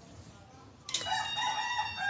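A sharp clink about a second in, then a long, high, pitched animal call that holds fairly steady to the end.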